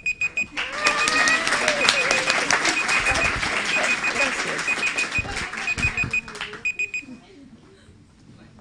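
Audience applauding for about seven seconds, with an electronic alarm beeping in short bursts of rapid high beeps about once a second; both stop together about seven seconds in.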